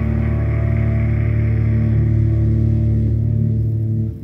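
Live band music: a low, droning chord held steadily as the song's final note, cutting off abruptly at the very end.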